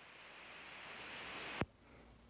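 Steady hiss of a home recording's room noise, slowly growing louder, ending in a single sharp click about one and a half seconds in.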